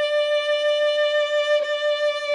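Violin playing one long held note with vibrato: a wide wrist vibrato narrowed by added finger vibrato. Its loudness pulses gently about four times a second.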